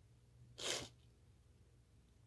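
One short puff of breath from the speaker, a quick exhale or sniff about half a second in, with near silence around it.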